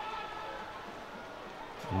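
Faint stadium ambience: a low murmur of a sparse crowd with distant voices.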